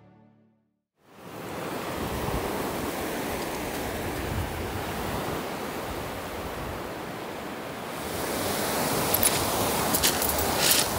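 Sea waves washing onto the beach: a steady rushing surf that fades in about a second in and swells slightly near the end, with a few sharp clicks near the end.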